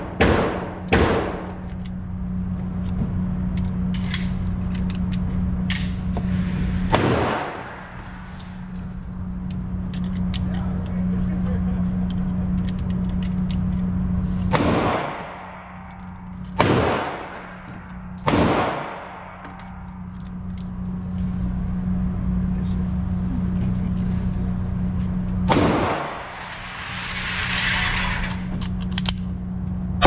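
Gunshots echoing in an indoor shooting range: a quick string of shots at the start, then single shots several seconds apart, each with a long ringing tail. A steady low hum runs underneath.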